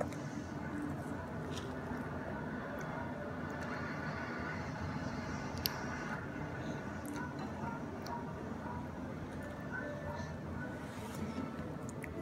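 Indistinct background voices from a television playing, steady and low, with one sharp click about halfway through.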